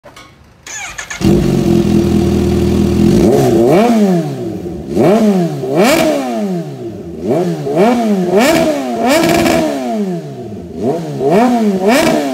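2023 Kawasaki Z H2's supercharged inline-four, breathing through an aftermarket slip-on exhaust, fires up about a second in and holds a steady fast idle. From about three seconds in it is blipped repeatedly, roughly once a second, each rev rising and falling away.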